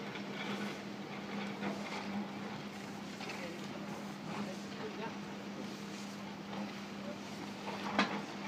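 Electric drive motor of a stainless-steel retractable folding gate running with a steady hum as the gate folds up.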